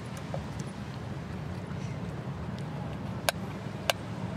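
Knife halving button mushrooms on an enamelware plate, the blade clicking sharply against the plate twice near the end, over a steady low background rumble.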